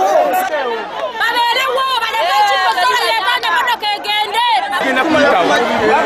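A crowd of people talking and shouting over one another, with several voices at once.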